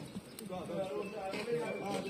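Indistinct voices of several people talking at once, none of the words clear.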